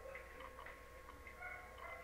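Faint ticking, about three ticks a second, over a steady electrical hum with a thin high whine.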